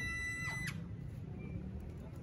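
The last ringing tones of a drum and bugle corps' final brass chord die away in the first half second after the cutoff. Then there is only a faint low background hum, with one short click about two-thirds of a second in.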